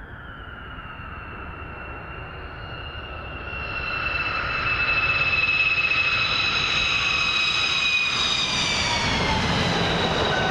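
F-15 fighter jet's twin jet engines on takeoff, a high whine over a low rumble that grows much louder as the jet comes close, the whine dropping in pitch near the end as it passes by.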